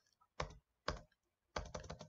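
Sharp clicks: two single ones about half a second apart, then a quick run of several near the end.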